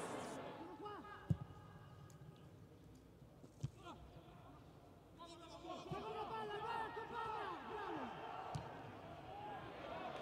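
Faint shouts and calls of footballers on the pitch, heard in an empty stadium, with a few sharp thuds of the ball being kicked: the loudest about a second in, another near four seconds and one more after eight.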